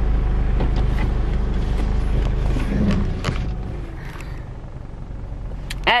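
Car engine running, heard from inside the cabin as a steady low hum that drops in level about halfway through, with a few faint clicks.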